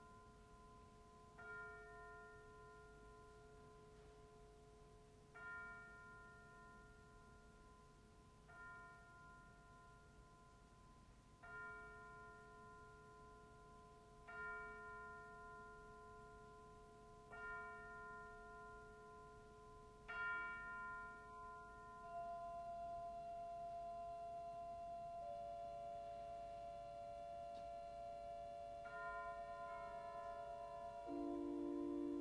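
Quiet contemporary piece for organ and percussion: bell-like metal percussion struck seven times, about every three seconds, each stroke ringing on, then steady held organ tones entering after about twenty seconds and thickening near the end.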